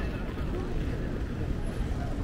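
City street ambience: a steady low rumble of traffic, with faint voices of people close by.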